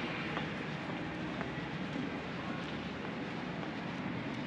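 Steady city street ambience: a continuous wash of low noise with a few faint ticks.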